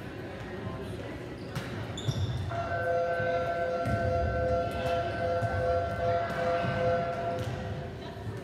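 Volleyballs being hit and bouncing on a hardwood gym floor, scattered sharp thuds. From about two and a half seconds in, a steady tone of several pitches sounds for about five seconds and then stops.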